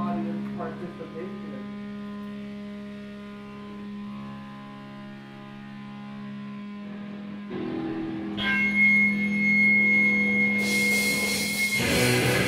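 Distorted electric guitar amplifiers droning on a held note between songs, then a high steady feedback whine about eight seconds in; a wash of cymbals comes in near the end as the band starts up again.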